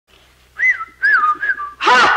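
A man whistling a few short, swooping notes. A louder vocal sound breaks in just before the end.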